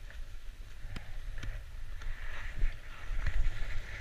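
Skis hissing and scraping over snow as the skier slides downhill, with wind rumbling on the action camera's microphone. A few sharp clicks and knocks come through, and the snow hiss grows stronger in the second half.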